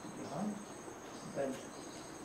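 Insects chirring steadily at a high pitch, with a man's voice saying a single instruction word near the end.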